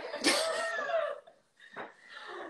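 Women laughing: a loud breathy burst of laughter lasting about a second, then a short breathy sound near the end.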